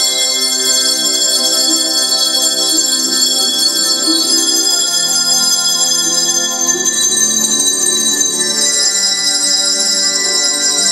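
A group of small handbells rung together, overlapping sustained bell tones building chords, the chord changing about four seconds in and again about seven seconds in.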